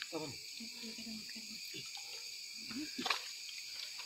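A steady high-pitched drone of forest insects, with people's voices talking over it.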